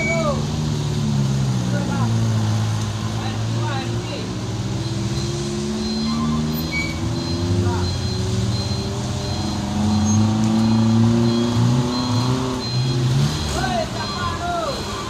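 Several vehicle engines running and revving, their pitch rising and falling slowly. A high reversing alarm beeps repeatedly from about five seconds in.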